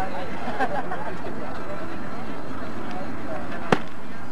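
Voices chattering around a softball field, then one sharp crack about three-quarters of the way through, the loudest sound here: a bat hitting the softball.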